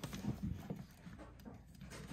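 Plastic action figure and toy vehicle being handled and fitted together: small plastic knocks and clicks with light thuds on a wooden floor, mostly in the first second, then quieter fiddling.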